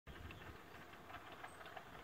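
Near silence: faint outdoor background with a low rumble and a few faint ticks, just before the man starts to speak.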